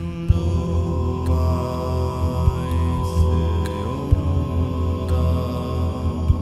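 Layered male voices singing held, mantra-like chant harmonies over a low drone, built up live with a vocal looper. New sustained notes slide up into place at the start and again about four seconds in.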